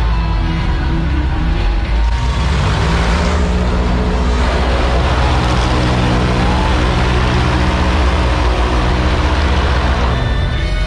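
Small stunt boat's engine running as it speeds across the water, with a rushing wash of spray that swells from about two seconds in, over show music.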